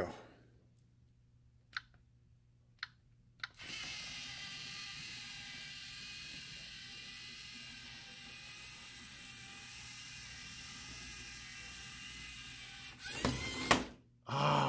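LEGO Mindstorms EV3 robot's motors and gears whirring steadily as it drives across the mat, after a few separate clicks in the first seconds. Near the end comes a short, louder clatter.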